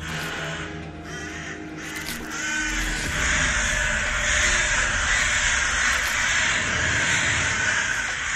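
Dark horror music. About three seconds in, a dense, harsh cawing like a flock of crows swells up over a low rumble and holds.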